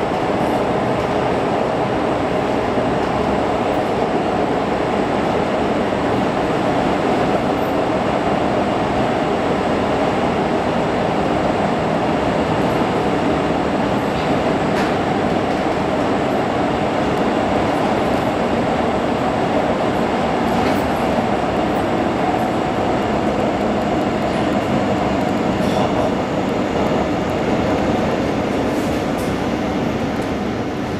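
Amsterdam metro train running, heard from inside the carriage: a steady, loud rumble of wheels on the track with a faint hum, easing slightly near the end as the train comes into the station.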